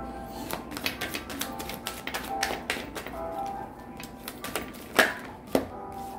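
Tarot cards being shuffled by hand: a quick, irregular run of papery clicks and flicks, with one sharper snap near the end.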